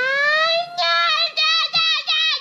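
A child's high-pitched voice singing 'da' nonsense syllables: one long rising 'daaah', then a quick run of short repeated 'da, da, da'.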